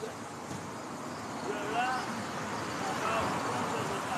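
Road traffic noise from a passing vehicle that swells from about halfway through, with faint, indistinct voices.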